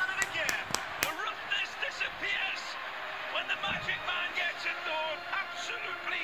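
Soundtrack of a football highlight video playing back: a voice talking over background music, with a few sharp knocks in the first second.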